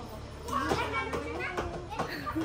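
Voices of women and a small child talking playfully, with a faint steady low hum underneath.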